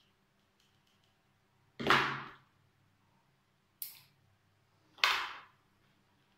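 Three short, sharp swishing handling sounds from orchid repotting, each fading within about half a second: a loud one about two seconds in, a shorter, fainter one near four seconds, and another loud one about five seconds in.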